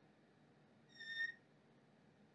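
Dry-erase marker squeaking on a whiteboard as a curve is drawn: one short, high-pitched squeak about a second in, over faint room tone.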